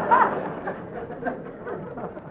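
A radio studio audience's laughter dying away, with a few scattered laughs trailing off after the first second.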